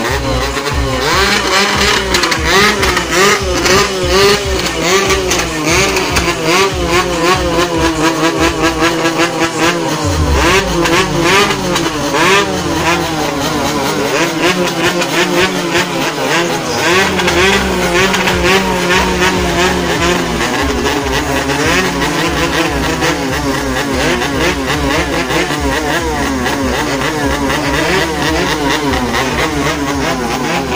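Motorcycle engines revving up and down over and over, loud, with the engines of other slow-moving parade vehicles running underneath.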